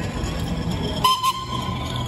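A steam traction engine's whistle giving one short toot about a second in, sharp at first and then trailing off, over a steady low background.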